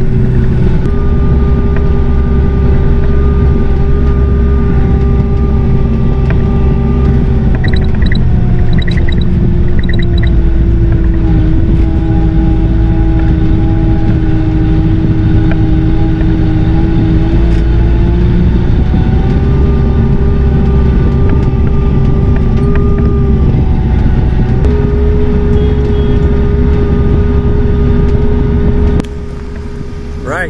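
Kioti RX7320 tractor's diesel engine running steadily as heard inside its cab while driving. Its pitch sags for several seconds midway and then climbs back. A short run of high beeps sounds about eight seconds in.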